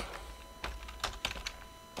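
Typing on a computer keyboard: a handful of separate keystrokes at an uneven pace as a line of assembly code is entered.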